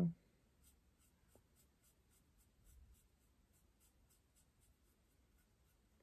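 Faint scratchy strokes of a small paintbrush working paint onto a wooden birdhouse, a quick run of light strokes.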